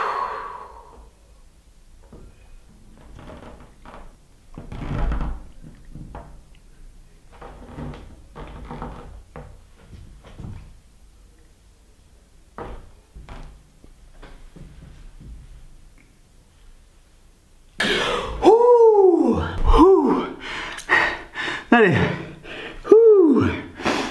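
A man's forceful breathy exhale, then a long, quiet held breath with only faint small knocks and rustles and one dull thump. About three-quarters of the way through, loud wordless voice sounds with swooping pitch break in.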